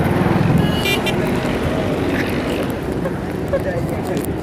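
Street traffic noise: vehicle engines running close by in a steady low rumble, with a brief higher-pitched pulsing sound about a second in.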